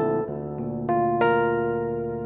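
Chords played on a digital stage keyboard's piano sound. A new chord is struck about a quarter second in and more notes are added about a second in, each left to ring and slowly fade.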